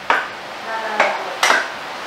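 A cooking utensil knocking and stirring in a pan of sauce on the stove: three sharp clinks, one at the start and two close together about a second in.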